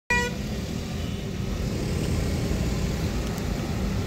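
A short vehicle horn toot right at the start, then the steady low rumble of a car driving, heard from inside the car's cabin.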